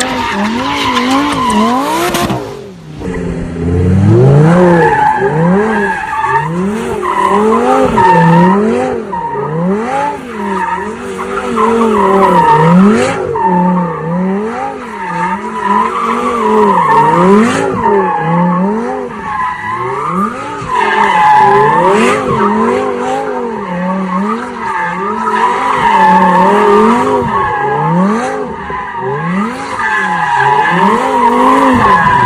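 Lamborghini Huracán V10 engine revving up and down again and again, about once a second, with tyres screeching as the car spins donuts. There is a brief dip and change a few seconds in, where one car gives way to another.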